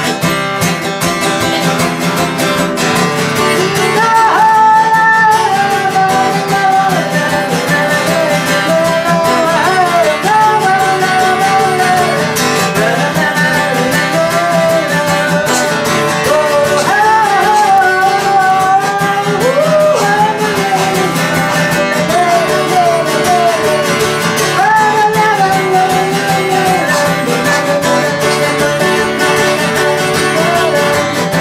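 A man singing to his own acoustic guitar accompaniment, the guitar playing alone for the first few seconds before his voice comes in with a sung melody in phrases.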